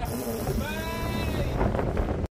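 Strong wind buffeting the microphone, with a man's wordless vocal sound held for about a second in the middle, rising then falling in pitch.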